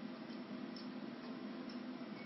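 Quiet steady room hum with a few faint light ticks.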